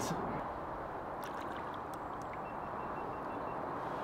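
Steady low background hiss of the open air, with a few faint clicks about a second in.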